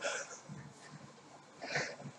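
A man breathing hard, winded from an all-out interval on an elliptical trainer: two loud breaths, one at the start and one just before the end.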